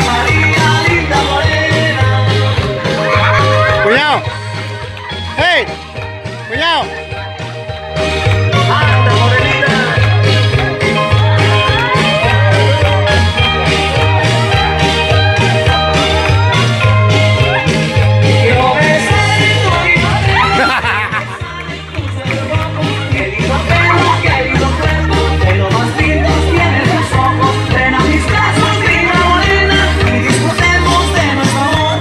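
Loud dance music with singing over a steady, pulsing bass beat. The bass drops out for a few seconds about four seconds in, then the full beat comes back about eight seconds in.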